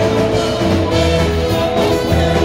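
Live band music: a trumpet playing a held-note melody over a drum kit keeping a steady beat.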